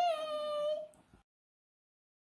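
A girl's high voice calling a drawn-out "yay" for about a second, its pitch sliding slowly down, then the sound cuts off suddenly to silence.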